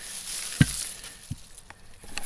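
Soil and roots rustling and crumbling as a celery plant's root ball is handled and lifted off a spade, with a dull thump about half a second in and a smaller one shortly after.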